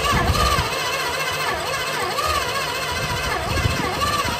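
Starter motor cranking the 1957 Plymouth Belvedere's engine with the plugs back in, its whine rising and falling with each compression stroke. The uneven rhythm is a by-ear compression check, showing one really weak cylinder and one slightly weak one.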